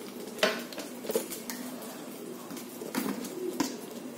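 Butter melting in a non-stick kadai over a gas flame, a faint sizzle with a few light clicks. A bird cooing softly in the background.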